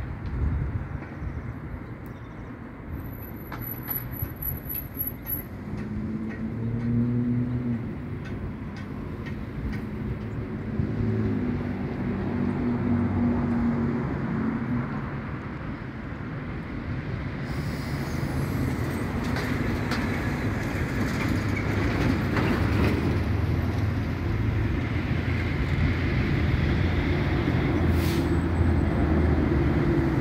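Low, continuous rumble of a heavy vehicle passing close by, growing gradually louder through the second half.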